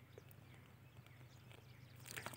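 Near silence: faint background noise with a low hum and a few tiny clicks.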